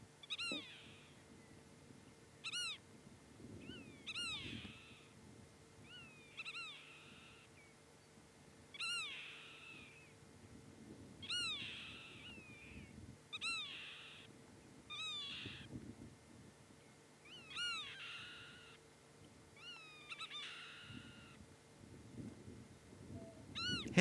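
A bird calling over and over, faint: short pitched call notes that rise and then fall, one every second or two.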